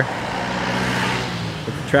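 A car passing close by on the street, its tyre and engine noise swelling and then fading.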